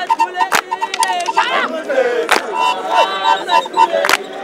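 Fighting sticks striking in a Zulu stick fight: two sharp cracks, about half a second in and just after two seconds. A crowd shouts throughout, and a high rapid trill rises above it.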